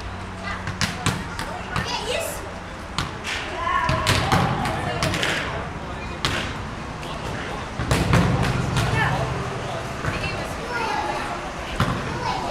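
Young people's voices shouting and calling, with scattered sharp thuds and knocks, the loudest just before the end.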